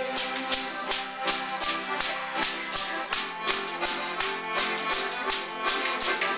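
Button accordion and acoustic guitar playing a lively traditional Newfoundland tune, with an ugly stick's jingling strikes keeping a steady beat of several strokes a second.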